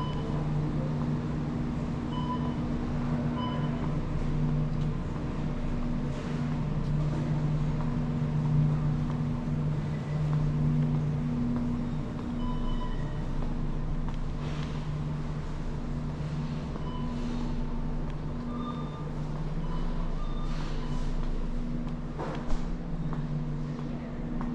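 Supermarket interior ambience: a steady low hum, the sort made by refrigerated display cases and air handling, with a few short electronic beeps scattered through and a sharp click near the end.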